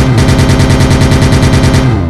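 Dance-pop remix build-up: a fast drum roll of evenly repeated hits, about fourteen a second, twice as quick as just before, over a repeated low synth note.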